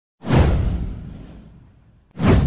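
A single whoosh sound effect with a deep low boom under a hissing sweep. It starts suddenly about a fifth of a second in and fades away over about a second and a half.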